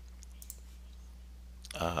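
A single faint computer mouse click, a right-click on the Windows Start button, about half a second in, over a steady low electrical hum from the recording setup.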